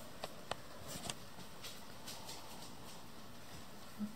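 A red fox eating sardines from a small metal dish: a handful of faint, short clicks and licks as its mouth works at the bowl, mostly in the first couple of seconds.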